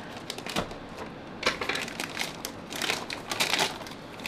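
Thin plastic shipping bag crinkling and tearing as it is cut and ripped open, a rapid run of crackles that is densest in the second half.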